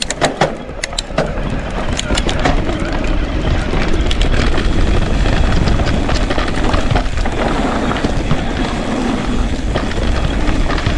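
Norco Range e-mountain bike rolling down a dirt singletrack: tyre noise on the dirt and the bike rattling over the rough trail, with wind rumbling on the action-camera microphone. A run of sharp clicks and knocks comes in the first few seconds.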